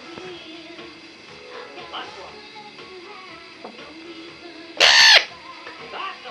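Female eclectus parrot giving one loud, short squawk a little before the end, over softer background sounds. It comes during what the owner wonders may be begging behaviour.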